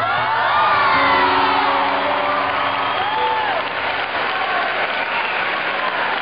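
Concert audience applauding and cheering, with voices rising and falling over the clapping, strongest in the first few seconds. Steady held musical notes sound underneath from about a second in.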